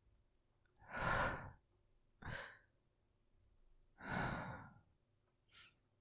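A man's breaths close to the microphone: a long sigh about a second in, a short breath, then another long sigh about four seconds in, and a faint short breath near the end.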